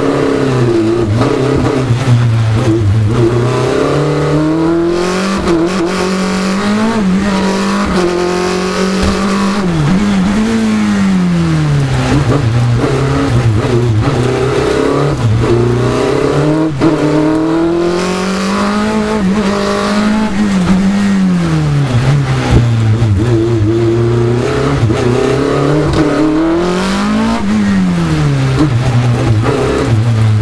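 Onboard sound of an open-cockpit racing sports car's engine, revving up and dropping back again and again as the car accelerates, brakes and changes gear through a slalom course.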